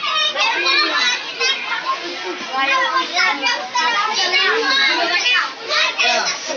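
A crowd of children talking and calling out at once, many high voices overlapping into a continuous chatter with no pause.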